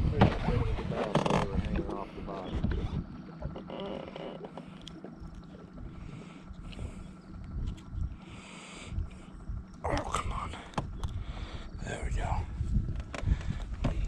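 Wind noise on a camera microphone aboard a fishing boat, uneven and low, with a faint steady hum beneath it. Brief bits of voice come at the start and again about ten seconds in.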